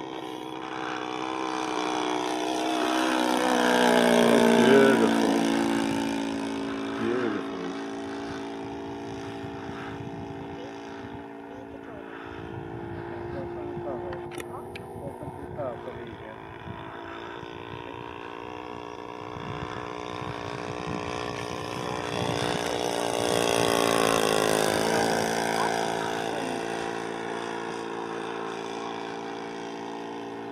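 Radio-controlled Hangar 9 P-47 Thunderbolt model with an internal-combustion engine flying circuits. The engine note swells to its loudest as the plane passes about five seconds in and again about 24 seconds in, dropping in pitch as it goes away after each pass.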